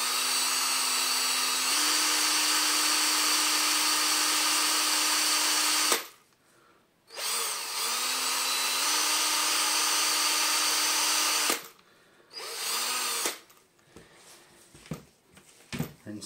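Cordless drill spinning small brass plane hardware held in its chuck while it is polished with Brasso on a cloth. The motor runs steadily for about six seconds, stops, runs again for about four seconds, then gives a short final burst; each run steps up slightly in pitch as it comes up to speed.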